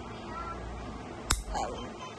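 A single sharp snap about a second in, as a steel fingernail clipper cuts through a long acrylic nail.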